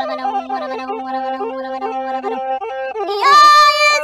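Amhara traditional vocal music: a quieter passage of held tones over a low steady drone, then a loud, high voice enters about three seconds in with a long, wavering, ornamented note.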